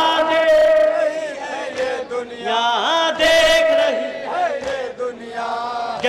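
A man chanting a Muharram nauha (lament) into a microphone, holding long notes that waver and bend in pitch.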